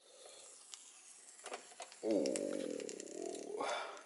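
A man's long, low, drawn-out "ooh" of appreciation, lasting about a second and a half and rising in pitch at the end. A few faint clicks come before it.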